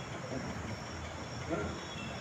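A pause in a man's amplified talk: a steady low background hum and hiss, with a brief faint voice sound about one and a half seconds in.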